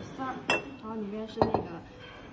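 Porcelain dishes knocking together as a serving plate is set down among them: a sharp clink with a brief ring about half a second in, and a louder knock about a second and a half in.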